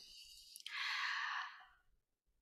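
A person draws one breath, a soft breathy hiss lasting about a second, in a pause between phrases of speech.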